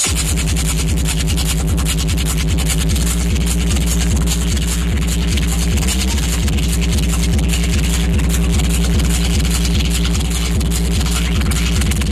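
Electronic dance music from a DJ set played loud over a festival sound system, with a steady driving beat and heavy bass.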